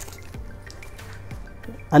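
Faint handling sounds: a few small clicks and light rustling as items are rummaged in a fabric pouch and a plastic-wrapped light stick is pulled out.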